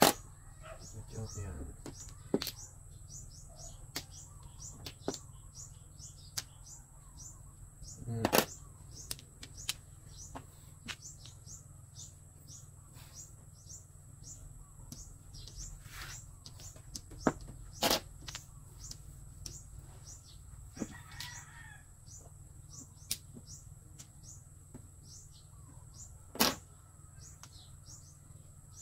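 Mahjong tiles clacking sharply now and then as they are drawn and discarded onto the table, over the steady hum of an electric fan. Small birds chirp quickly and continually in the background.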